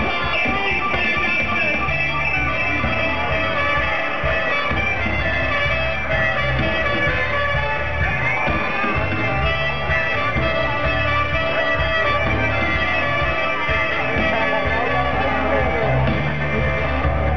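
Live band playing loud amplified music, with a heavy bass line.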